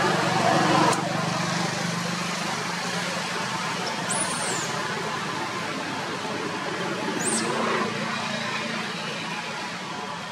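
Steady outdoor background noise like distant road traffic, a little louder in the first second. Two brief, high-pitched falling chirps come about four and seven seconds in.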